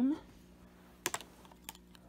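Plastic lipstick cases clicking as they are handled: three light clicks close together about a second in, then one more a little later.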